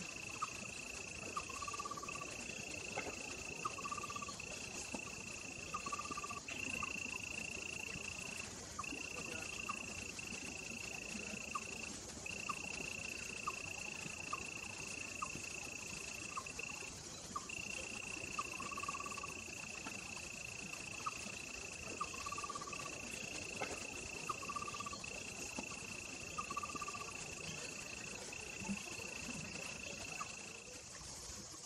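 Outdoor summer insect chorus: a steady high trill broken by brief gaps every second or two over a fainter high hiss, with a short lower note repeating about every two seconds and a few faint clicks.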